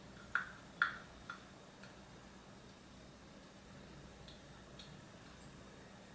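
Clear plastic Invisalign aligners clicking as they are pressed and seated onto the teeth: three sharp clicks in the first second and a half, then a few fainter ones a few seconds later.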